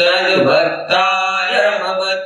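A male voice chanting a Vedic Sanskrit invocation, one long held phrase with a few steps in pitch. It starts sharply after a breath and fades near the end.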